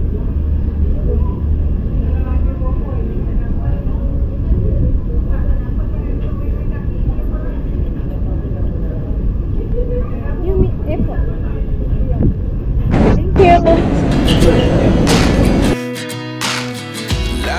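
Steady low rumble of city street ambience with faint background voices. Several sharp knocks or clinks come near the end.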